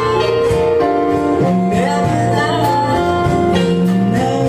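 Live band music: a male singer at the microphone with acoustic guitar, over low bass notes, his line holding notes and sliding between some of them.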